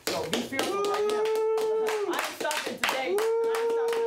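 A group of people clapping hard while a voice holds a long, level-pitched shout or chant twice, each note lasting a second or two.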